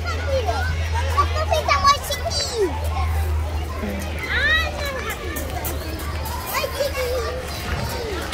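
Children's voices and chatter outdoors, with a steady low rumble underneath.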